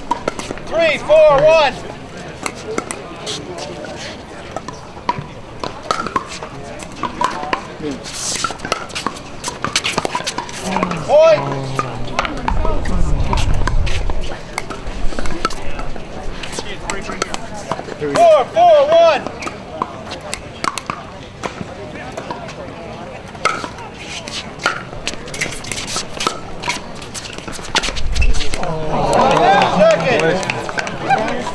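Pickleball court ambience: scattered sharp pops of paddles striking plastic balls, over a background of spectator chatter with a few short calls from voices.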